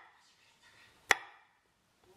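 A single chop of a chef's knife through macadamia nuts onto a wooden cutting board, about a second in.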